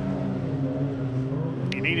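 Rallycross car engine running at a steady note as the cars take a hairpin, heard from trackside.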